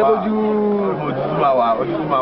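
A person's voice holding one long, low, drawn-out note for nearly a second, then going on in shorter, rising and falling vocal sounds, with other people talking around it.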